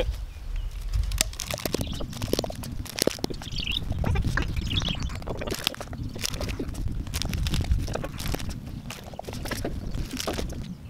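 Small hammer tapping wooden shiitake spawn dowels into drilled holes in a log: irregular, uneven knocks, over a low steady rumble.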